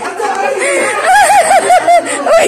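A person laughing: a rapid run of about five or six high-pitched 'ha's, loudest in the second half.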